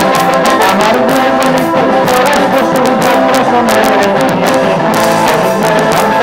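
Loud live band music, an instrumental passage with many held notes over a dense, steady run of strikes.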